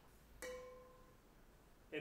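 A single note is struck on a pitched percussion instrument about half a second in and rings out clearly, fading away over the next second or so. A man's voice begins just at the end.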